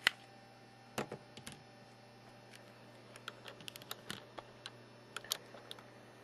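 Light clicks and taps from handling a Nokia N900 phone: a sharp click at the start, another about a second in, then a run of small irregular clicks over a faint steady hum.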